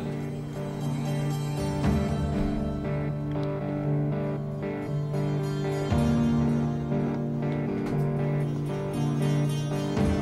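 Background drama score: sustained low notes with plucked string notes over them, the chord shifting a couple of times.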